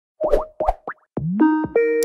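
Cartoon sound effects: three short rising bloops in the first second, then a quick upward slide into held synth notes near the end, like a jingle starting.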